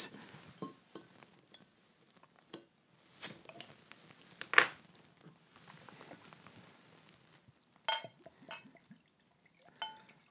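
A glass beer bottle being opened: sharp clicks a little over three and a half seconds in as the cap is pried off, then a ringing clink of glass on glass near eight seconds in, with faint handling sounds between.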